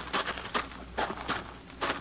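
Radio-drama sound effect of footsteps on a rocky path, about six uneven steps as the men climb a steep slope.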